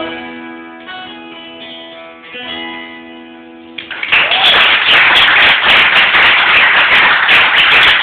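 Guitar's last chords ringing out and fading, then applause breaking out suddenly about four seconds in.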